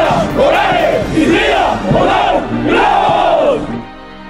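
A marching formation of police special forces troops shouting a cadence chant in unison, in loud rhythmic calls that break off just before the end.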